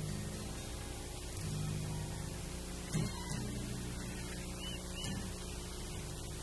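Acoustic guitar picked softly, with sustained low bass notes and a few plucked attacks, over a steady electrical hum.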